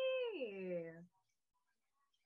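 A single drawn-out vocal exclamation, one voice sliding steadily down in pitch for about a second before stopping.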